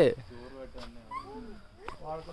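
A person's voice: quiet, short vocal sounds with rising and falling pitch after a spoken word trails off, with a sharp click near the end.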